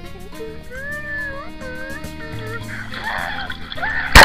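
Background music plays with high, wavering, gliding notes over it. Near the end a soft water sloshing begins.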